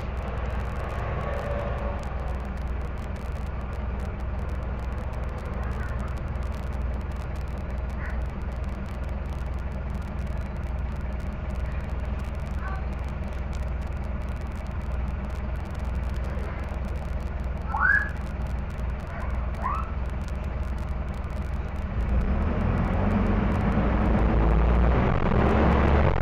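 The Mercedes-Benz OM-904LA four-cylinder turbodiesel of a Mercedes OH-1115L-SB bus running steadily at low revs, then revving up louder as the bus accelerates about four seconds before the end. Two short, high rising squeaks cut in about two seconds apart past the middle.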